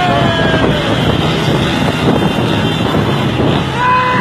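Several motorbike and rickshaw engines run at speed, with wind rushing over the microphone. The result is a dense, steady road noise.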